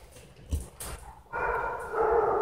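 A dog's drawn-out, steady vocal sound, starting a little past halfway through and still going at the end, after a brief knock about a quarter of the way in.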